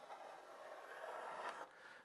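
A homemade wooden chamfer plane being pushed along the sharp corner of a board, taking off a thin shaving: a faint, steady hiss in one long stroke that stops about a second and a half in.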